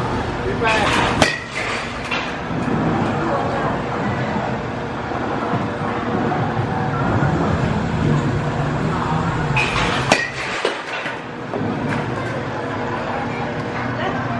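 Batting cage sounds: two sharp cracks of a baseball impact, about nine seconds apart, over a steady background rumble.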